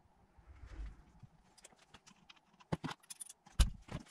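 A few clicks and knocks of metal alternator parts being handled on a cardboard-covered bench as the front housing comes off, with a dull thud about half a second in and the loudest knock near the end.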